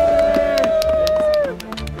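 Background music, with one long steady note held for about a second and a half before it drops away, over scattered short clicks.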